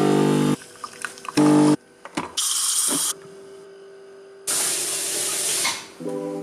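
Home espresso machine: its pump buzzes in two short bursts, at the start and about a second and a half in. Two hissing spells follow, a short high one and a longer one near the end.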